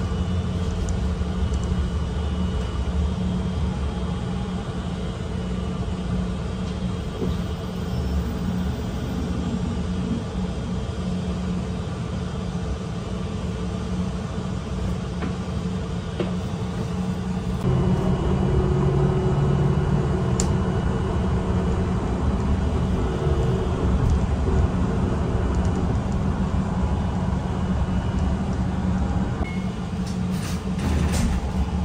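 Steady low rumble and engine hum of a city bus in motion, heard from inside the passenger cabin. About eighteen seconds in it grows louder and its hum changes.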